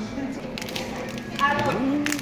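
Room background noise with a few faint ticks, then a short burst of a person's voice about one and a half seconds in.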